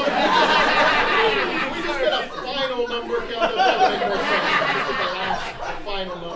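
A live theatre audience laughing and reacting, many voices overlapping at once.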